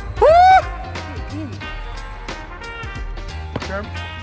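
A man's loud, rising "Woo!" cheer just after the start, then background music with a steady bass line.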